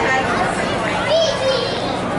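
Spectators chattering, several voices talking over one another, children's voices among them, with a few high-pitched calls a little after the middle.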